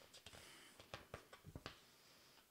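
Near silence with a few faint clicks and rustles of a paperback book's pages being handled and turned.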